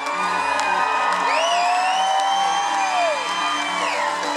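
Acoustic guitar strummed in a steady rhythm under a harmonica in a neck rack. The harmonica plays one long note that bends up about a second in, is held, and falls away near the end.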